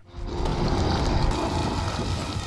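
Steady low rumbling from the episode's soundtrack as the cave starts to collapse.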